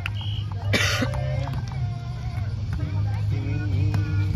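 Outdoor volleyball play on sand: players' voices calling out and several sharp knocks of hands on the ball, over a steady low rumble.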